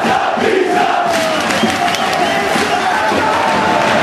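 Large stadium crowd of football supporters chanting and singing together, a dense mass of voices with a wavering sung line.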